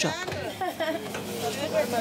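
Plastic carrier bags rustling and crackling as food is packed into them, over faint voices.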